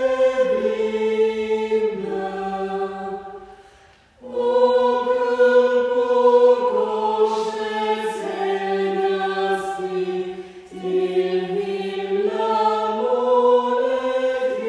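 Small choir singing slow, sustained chords in long phrases, with a pause for breath about four seconds in and a brief dip near eleven seconds.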